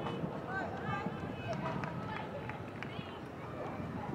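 Distant voices calling and shouting across an outdoor soccer field over steady open-air background noise, with a few short knocks about halfway through.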